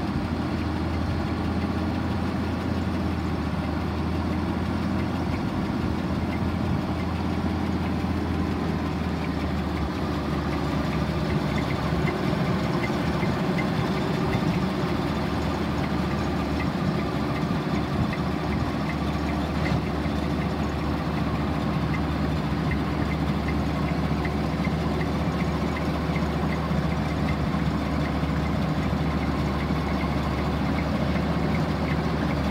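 Gleaner combine's engine running steadily at idle, a dense unchanging mechanical hum, with a faint regular ticking that joins in partway through.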